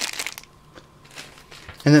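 Thin clear plastic bag crinkling as hands handle it, loudest in about the first half second and fainter after.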